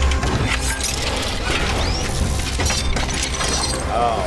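Sound effects of a room transforming into a secret lab: rapid mechanical clicks, clanks and ratcheting over a low rumble, with a rising whoosh about two seconds in.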